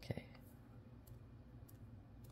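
Faint, scattered light clicks over low room tone as a cotton swab is worked in the pans of a metal watercolour tin.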